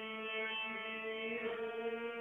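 Instrumental music with long, steady held notes, two of them sounding an octave apart.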